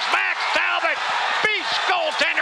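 A hockey play-by-play announcer shouting an excited goal call in long, strained held notes over arena crowd noise.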